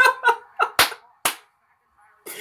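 A man laughing: a short voiced laugh, then two sharp, breathy bursts about half a second apart, then he falls quiet.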